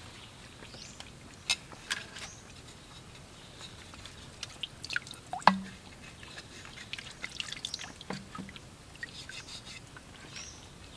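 Scattered clicks and light knocks of a clay lid and gourd bottle being handled beside a clay pot, with one sharp knock about halfway through. Faint bird chirps behind.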